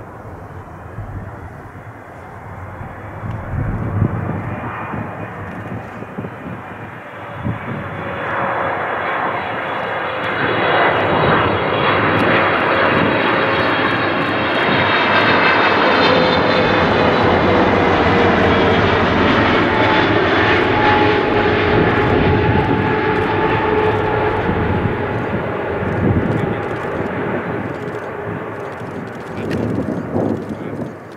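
Boeing 777 jet airliner on low final approach passing overhead: the engine noise builds, peaks with a whine whose pitch slowly falls as it passes, then fades. There is a short rise in level near the end.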